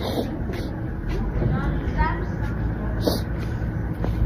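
Steady low outdoor rumble, with a few faint short sounds like distant voices or chirps about halfway through.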